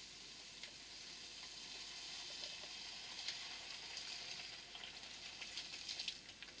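Sausages, onions and mushrooms sizzling in a hot frying pan, a faint steady hiss that grows louder in the middle as water is poured in for the gravy.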